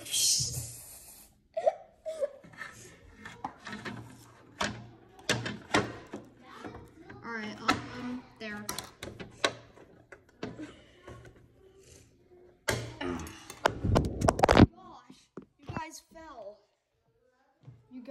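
Knocks and clatter of plastic fingerboard ramp parts and the phone being handled on a wooden table, with a cluster of louder bumps near the end. A child's voice murmurs quietly in between.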